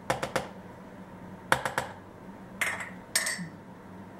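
A kitchen utensil clicking and tapping against a plastic food container as raisins are tipped in, in four short clusters of taps.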